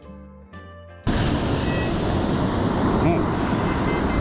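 Background music for about the first second, then an abrupt cut to loud, even noise of wind on the microphone and ocean surf.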